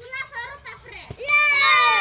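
A plastic water bottle lands with a short thud on dirt about a second in, and a group of children at once let out a loud, long, falling cry together as it falls over on its side, a missed bottle flip.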